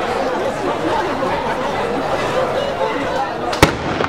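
Crowd chatter with one sudden, loud black-powder blank shot near the end.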